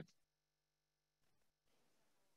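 Near silence: a pause between phrases of speech over a video call, with only a faint steady hum.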